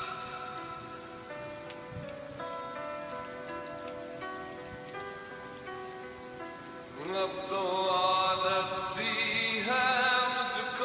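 Slowed, reverb-heavy Hindi lofi song: a soft passage of held chords over a layer of rain sound. A singing voice comes in about seven seconds in and the music grows louder.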